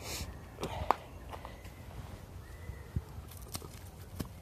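Low rumbling handling noise from a hand-held phone being moved around, with quiet rustling and a few light clicks and ticks, the sharpest about a second in. A faint thin high tone sounds briefly around the middle.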